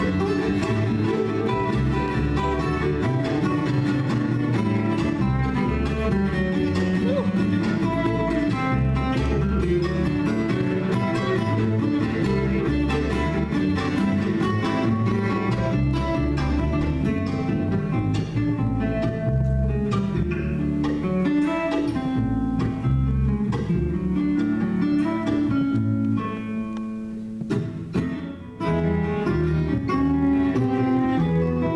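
Acoustic string trio of fiddle, acoustic guitar and double bass playing an instrumental folk piece, with the guitar picking busily under bowed strings. The music thins out briefly near the end, then comes back in full.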